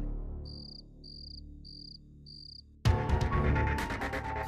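Cricket chirps, four short even chirps about six-tenths of a second apart, over a low background-score drone that fades away. About three seconds in, loud dramatic background music starts suddenly.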